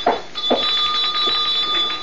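Doorbell ringing in a continuous rapid trill. It breaks off briefly just after the start and then rings on, with a few dull thuds.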